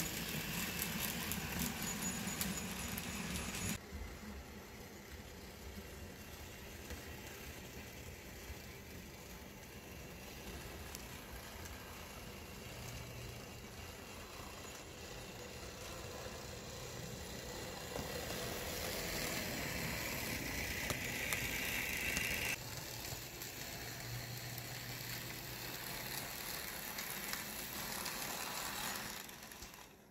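N scale model F7 diesel locomotives running on the track with log cars: a steady mechanical whir with a light rattle. The sound changes abruptly about four seconds in and again near the end, and is loudest in the stretch before that second change.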